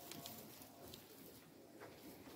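Near silence: faint background hiss with a few soft clicks.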